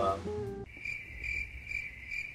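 Crickets chirping in a steady pulsing trill that cuts in abruptly about half a second in. It is the stock "crickets" sound effect used to mark an awkward silence.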